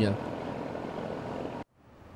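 Steady, even noise from a navy hospital ship under way on a river, with no clear engine note. It cuts off abruptly near the end into near silence and faint room tone at an edit.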